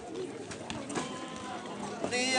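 A quiet lull between sung phrases: faint low bird calls over soft crowd murmur.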